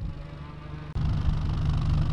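An 8th-generation Honda Civic coupe's engine idling through an aftermarket exhaust with a low, steady rumble that grows louder about a second in.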